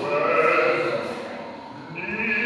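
Wordless human vocalising: held, wavering voiced notes without words, fading away over the second half.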